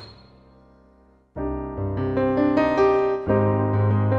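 Piano sound from a Roland Jupiter-80 synthesizer, played from a Nektar Impact LX88 controller keyboard. A struck note dies away, then full chords begin about a second and a half in, with another chord struck near the end.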